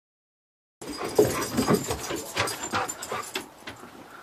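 Dogs panting and whimpering close to the microphone, mixed with quick scuffling clicks. The sound starts abruptly about a second in and dies down near the end.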